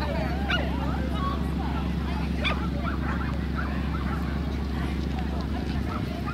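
A dog barking a few short times, with indistinct voices and a steady low rumble underneath.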